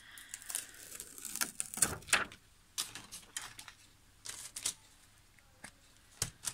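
A clear acrylic stamp and its plastic sheet handled on a craft table: a brief rustle of plastic at the start, then scattered light clicks and taps.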